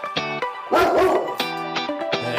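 Intro music of short plucked guitar notes, with a dog bark about a second in.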